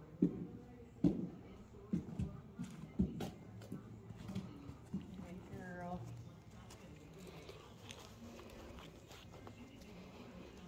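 A horse's hooves knocking on a wooden plank bridge, several hollow clops about a second apart over the first five seconds.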